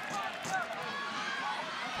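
Soccer stadium crowd noise: a steady din from the stands with scattered indistinct shouts.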